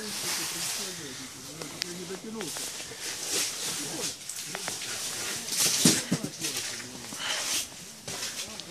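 Faint, indistinct voices in the background, mostly in the first couple of seconds, over a steady hiss, with a few short bursts of rustling or handling noise later on.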